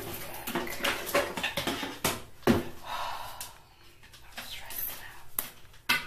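Rustling and scraping as a synthetic curly wig is pulled and adjusted on the head, with a few sharp knocks of handling; the loudest knock comes about halfway through and another sharp click near the end.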